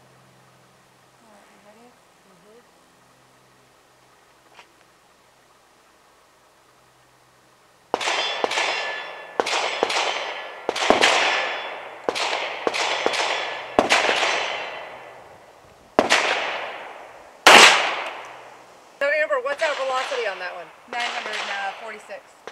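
A run of about a dozen gunshots starting about eight seconds in, at uneven spacing, each a sharp report with a long echoing tail. The loudest comes near the end.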